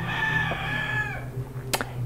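A rooster crowing: one long held call that tails off about a second and a half in.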